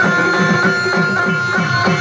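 A live folk band plays devotional music: a melody instrument holds long steady notes over a fast hand-drum beat whose low strokes bend downward in pitch, about four a second.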